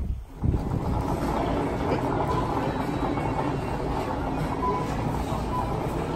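A stroller's wheels rolling steadily over a hard shop floor, a continuous rumble over the store's background hum. It starts abruptly about half a second in.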